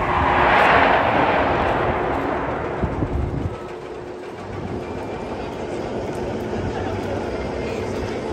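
A roller coaster train rushing by on its track, a broad roar that swells within the first second and fades away over the next few seconds. A steady, lower background of park noise remains afterwards.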